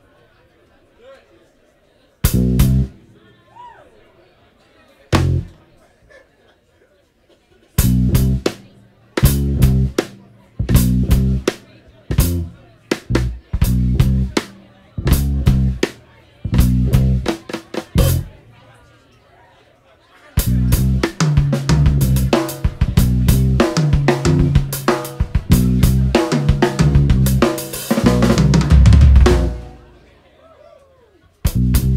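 Live jazz band, drum kit and electric bass to the fore, playing short stop-time hits with quiet gaps between them, at first sparse and then about one a second. About two-thirds of the way through, the full band plays continuously, building to its loudest just before it cuts off sharply at the end.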